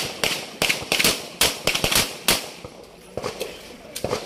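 A rapid string of gunshots, about ten sharp reports in the first two and a half seconds, then only one or two faint ones near the end.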